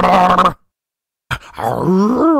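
A drawn-out, wordless groan from a person's voice that cuts off abruptly about half a second in. After a moment of dead silence, another drawn-out vocal sound begins, its pitch rising and falling.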